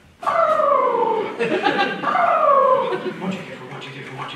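Two long howls, one after the other, each sliding down in pitch.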